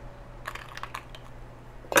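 Ice dropped into a metal cocktail shaker tin: a few faint clicks of ice being picked from a bowl, then one loud, sharp clink near the end with a short metallic ring.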